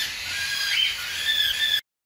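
Budgerigars giving a few short, high-pitched squeaky calls, the longest about half a second, near the end.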